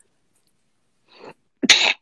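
A man sneezes once near the end, after a short breath in.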